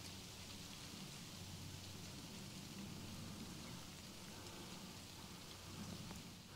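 Quiet outdoor ambience: a faint, even hiss with no distinct events.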